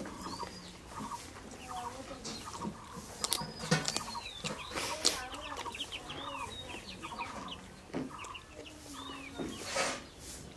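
Chickens clucking in the background with small birds chirping, over close eating sounds: chewing and mouth smacks. A few sharp clicky smacks stand out about four and five seconds in and again near the end.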